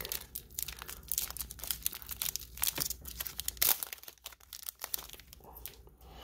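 Clear plastic card toploaders and sleeves being handled and slid against each other, giving irregular light clicks and rustles, with one sharper click about two-thirds of the way in.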